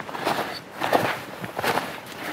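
Footsteps crunching in frozen snow, a string of irregular steps about two to three a second.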